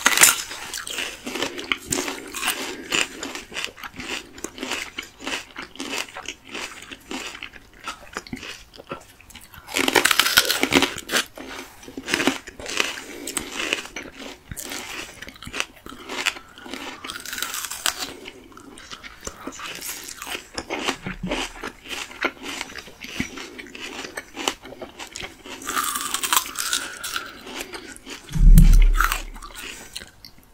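Crisp, crunchy bites into unripe green plums and wet chewing, close to the microphone, with louder crunches about a third of the way in and again near the end. A dull low thump comes shortly before the end.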